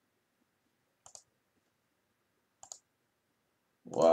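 Two short, sharp double clicks about a second and a half apart in an otherwise quiet room, then the start of a person's voice at the very end.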